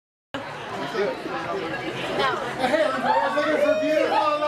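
Several people talking over each other, starting abruptly after a brief moment of dead silence.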